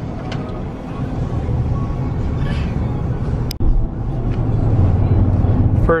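Cabin noise inside a Chevrolet Suburban on the move: a steady low rumble of tyres and engine. About three and a half seconds in there is a sharp click and a brief dropout, after which the rumble is louder.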